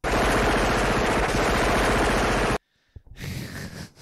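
Rapid automatic gunfire played as a soundboard sound effect: one dense burst lasting about two and a half seconds that cuts off suddenly.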